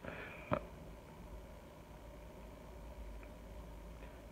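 Faint room tone with a steady low hum, and a single short click about half a second in.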